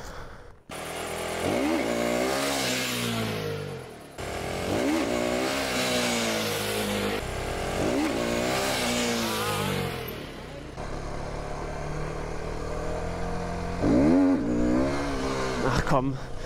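Aprilia supermoto motorcycle engine revving up and dropping back about four times, as in wheelie attempts, with a steadier stretch of engine running between the last two.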